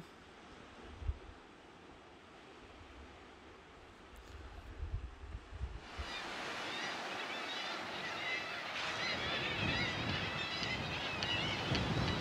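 Wind buffeting the microphone in low gusts for the first few seconds. About six seconds in, the constant calling of a busy seabird colony comes in over the sea and surf, many birds at once.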